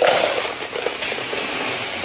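A large bucket of ice cubes poured in one continuous cascade into a cup, overflowing and clattering across a hard countertop.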